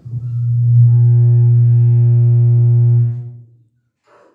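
A loud, steady low drone with a buzzy edge from the hall's sound system. It holds one pitch for about three seconds, then fades away.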